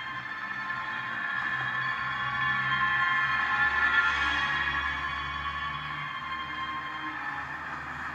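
Film soundtrack music playing through laptop speakers: several long held notes over a low drone, swelling to their loudest about halfway through, then easing off.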